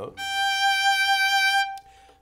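Fiddle playing a single bowed note, a G fingered with the second finger on the E string, held steady for about a second and a half before it stops.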